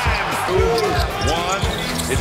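A basketball bouncing in repeated low thumps on a hardwood court, over background music.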